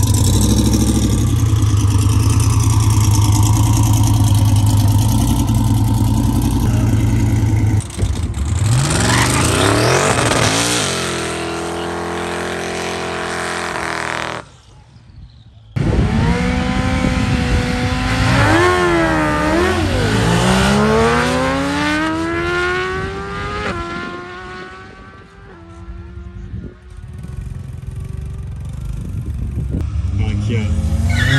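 Camaro drag car's engine running loud and steady at the start line, then climbing in pitch as it launches and pulls away. After a short break, two sportbikes rev unevenly on the line, then accelerate away with engine pitch climbing through gear changes and fading into the distance.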